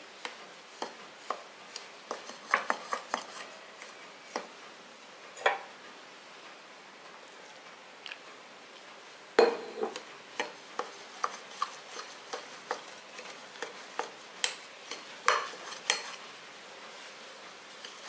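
A metal spoon stirring a crumbly rice-flour and coconut dough in a glass bowl, clinking and scraping irregularly against the glass, loudest about nine seconds in.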